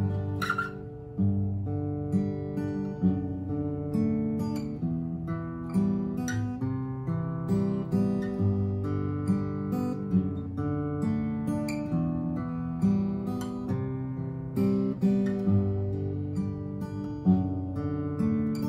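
Acoustic guitar fingerpicked in an even thumb, thumb, pointer, middle pattern, played through the intro progression G, D/F#, E minor, C twice, then G and D/F#, with the plucked notes ringing into one another.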